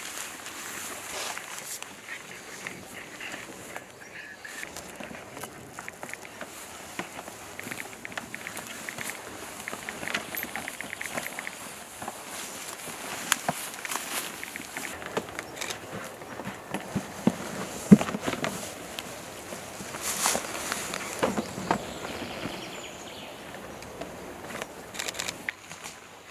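Rustling of grass, ferns and clothing with scattered clicks and knocks of gear being handled by people crouched on the ground, a quick run of ticks a little before the middle, and a sharp knock about two-thirds of the way through.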